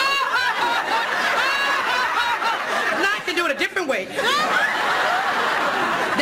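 A woman's loud theatrical wailing in long, sliding cries: a staged funeral lament by a professional mourner. Studio audience laughter runs under it.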